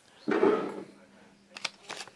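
A short voiced sound about a quarter second in, then quiet, then a few light clicks near the end from the opened plastic product bag being handled on the desk.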